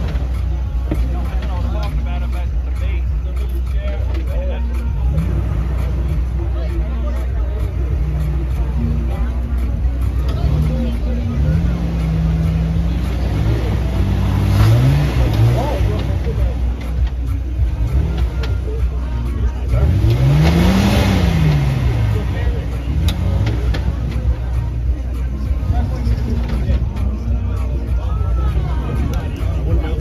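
A lifted Jeep Wrangler's engine revving up and down as it crawls over a pile of large boulders, over a steady low rumble. Two stronger revs rise and fall, about halfway and about two-thirds of the way through.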